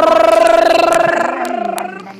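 A young man's loud, drawn-out vocal cry, rising at the start and then held on one pitch with a fast rattling flutter for about a second and a half before fading near the end.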